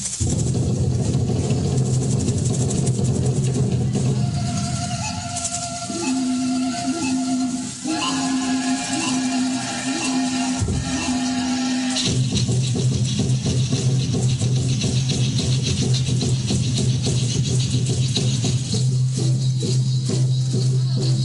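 Music for an Aztec-style dance: long held low droning tones, with steady shaking of rattles over them. The held notes shift about six, eight and twelve seconds in.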